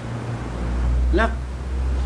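A low, steady rumble that swells up about a third of a second in and stays loud, under one short spoken word.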